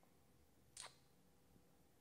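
Near silence: room tone, broken once, a little under a second in, by a brief soft sound.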